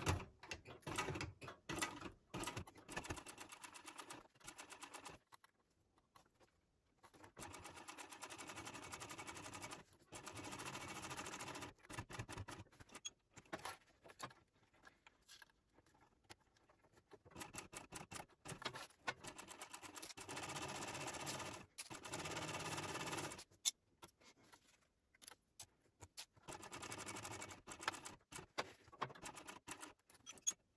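Techsew 2750 Pro industrial cylinder-arm walking-foot sewing machine topstitching a zipper panel in several short runs of a second or two. The runs stop and start, with faint clicks of the work being handled in the pauses.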